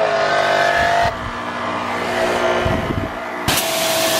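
Sun Joe SPX 9004 electric pressure washer running with a steady whine from its motor and pump. About three and a half seconds in, a loud hiss of water spraying from the wand nozzle starts.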